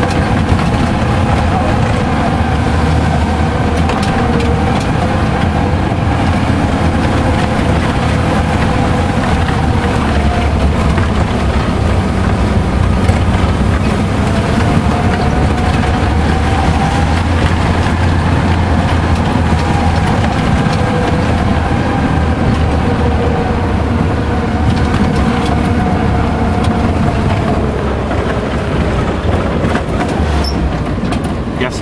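Tour vehicle's engine running steadily as it drives along a rough dirt road, with a heavy low drone and occasional knocks from the bumps.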